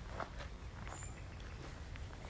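Footsteps of a person walking on a path, over a steady low rumble, with a brief high chirp about a second in.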